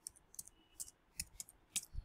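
About six faint, separate keystrokes on a computer keyboard, typed at an uneven pace a few times a second.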